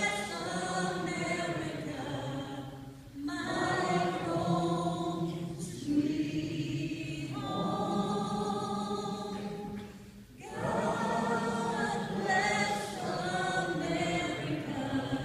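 Voices singing together unaccompanied in long held phrases, with two short pauses for breath about three and ten seconds in.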